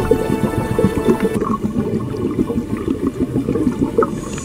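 Water splashing and streaming as a swimmer hauls up out of a pool on a metal ladder. Music plays underneath and thins out about a second and a half in.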